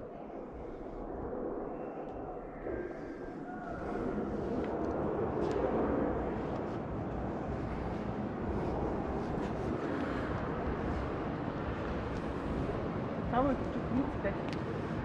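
Indistinct voices over the steady background noise of a large exhibition hall, with a brief voice near the end.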